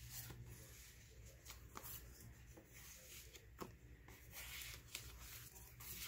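Faint rustling and sliding of paper and cardstock cards being handled and pulled from a paper pocket, with a few light ticks.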